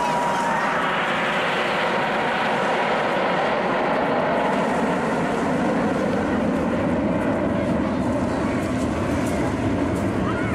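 Red Arrows formation of BAE Hawk T1 jets flying past, a loud, steady rush of jet engine noise that swells in the first second and then sinks lower in pitch as the jets pass.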